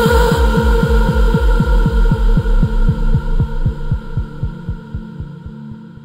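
Drum and bass track ending: a fast, even pulse of low bass thuds that drop in pitch, about five a second, over a sustained synth drone, the whole fading out.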